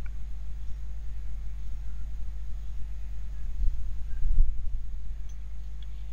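Steady low electrical hum on the recording, with a few faint clicks.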